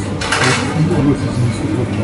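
Draught beer tap pouring into a glass, with a short hiss a fraction of a second in, over café chatter and a low steady hum.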